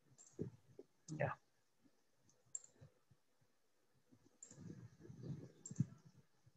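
Faint single clicks of a computer mouse, a few of them spread out, with soft low knocks near the end.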